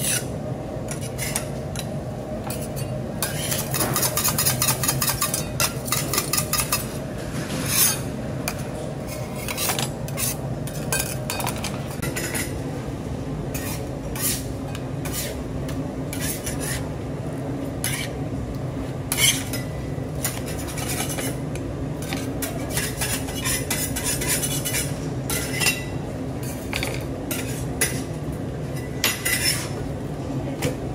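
Steel bench scrapers scraping and knocking on a stainless steel candy table in short, irregular strokes, with a quick run of strokes a few seconds in. A steady low hum runs underneath.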